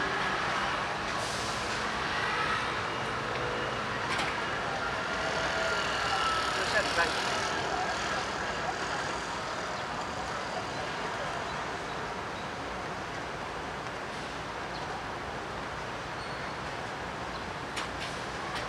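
Steady road traffic running at a city intersection, a little louder in the first half, with passersby talking.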